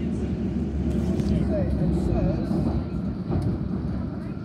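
London Underground Circle line train running, a steady low rumble heard from inside the carriage.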